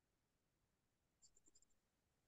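Near silence, with a few very faint high ticks about a second and a half in.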